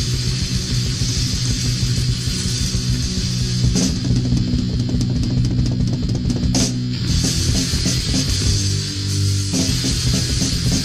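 A punk rock recording playing: electric guitar, bass guitar and drum kit, with two sharp cymbal-like hits about four and seven seconds in.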